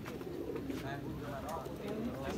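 Domestic pigeons cooing, the low rising-and-falling calls repeating, over faint background chatter from people.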